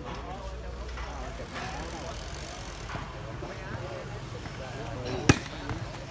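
Spectators chattering and calling around an outdoor volleyball court, then a single sharp smack of a hand striking a volleyball about five seconds in, typical of a serve.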